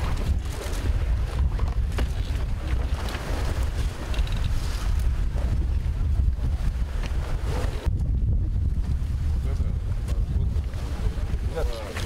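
Wind buffeting the microphone: a steady low rumble throughout, with a faint mix of sounds above it.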